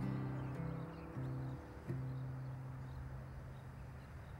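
Acoustic guitar playing the closing notes of a song: a few single plucked notes about a second apart, each left to ring, the sound dying away.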